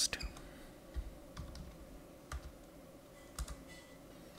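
A handful of quiet keystrokes on a computer keyboard, scattered irregularly with pauses between them as a line of code is typed.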